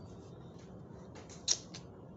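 A few small clicks over a low, steady hum, the sharpest and loudest one about one and a half seconds in.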